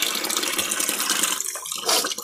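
Water running steadily from a kitchen tap into a stainless steel sink.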